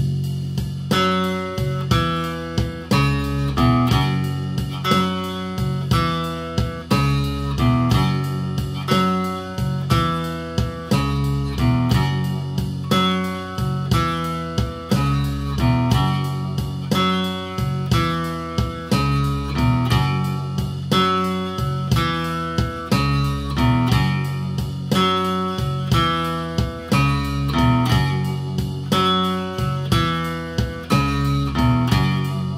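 Electric guitar playing a repeating F-sharp blues riff (open E leading up to F sharp, its octave, then E and C sharp) over a steady drum-machine beat from a Zoom RT-123 rhythm machine. The riff cycles round and round throughout.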